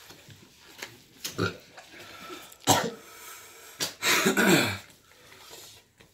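A man coughing and gagging in several short, harsh bursts, the longest and loudest about four seconds in, then clearing his throat: a reaction to the burn of a super-hot chili chip.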